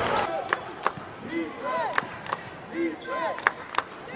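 Basketball game sounds on a hardwood court: sneakers squeaking in short rising-and-falling chirps and a basketball bouncing in sharp knocks, often in pairs, over a background of arena crowd noise. A louder burst of crowd noise fades just after the start.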